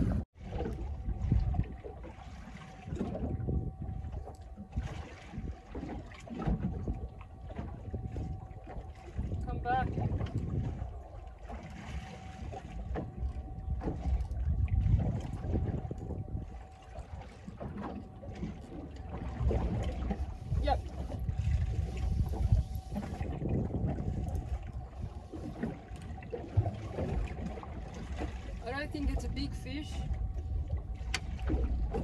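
Wind buffeting the microphone on a small boat at sea, in uneven gusts, with water against the hull and a thin steady whine throughout.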